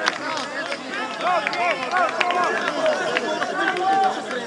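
Several people's voices overlapping, calling out and talking at once with the words indistinct, as players and spectators react to a goal.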